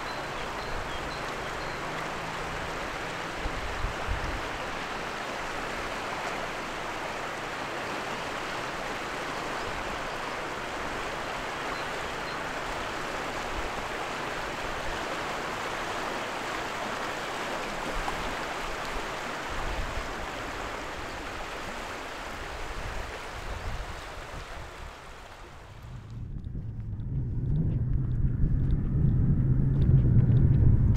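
Steady rush of a fast, shallow river running over rocks. Near the end it gives way abruptly to a louder low rumble that keeps growing.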